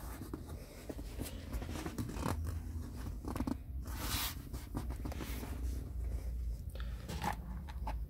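Handling noises: a hand rubbing and patting a leather car seat while the phone is moved around, giving irregular rustles and scrapes over a steady low rumble, with a sharper scrape about four seconds in.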